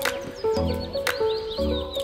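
Background music with a beat about once a second, and a horse whinny laid over it as a sound effect for a stick-horse gallop.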